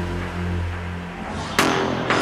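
Electronic drum and bass music from a track's intro. Sustained low synth notes fade out about a second in, then a rising rushing sweep builds into a sharp hit near the end.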